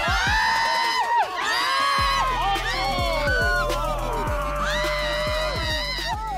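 Several people shrieking and squealing in long, high, drawn-out cries of disgust, over background music.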